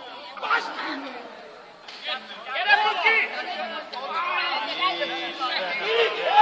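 Several men's voices chattering and calling out over one another, louder from about two seconds in.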